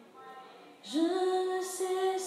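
A woman singing a gospel song unaccompanied. After a short breath pause she slides up into a long held note about a second in.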